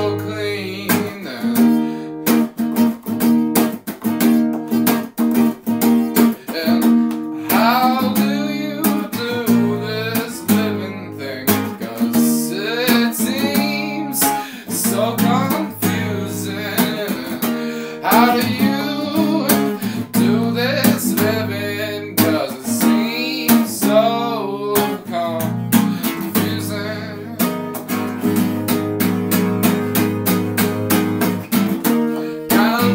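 Lo-fi folk song: an acoustic guitar strummed steadily in even strokes, with a voice singing over it.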